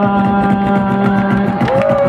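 Music with a steady beat and one long held note that breaks off about a second and a half in.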